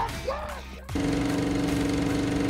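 A short shout, then about a second in a steady, buzzy tone with a rapid flutter cuts in abruptly and holds. The tone is an edited-in sound effect for a film-countdown graphic.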